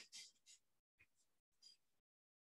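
Near silence, with a few faint, brief scratching sounds of writing.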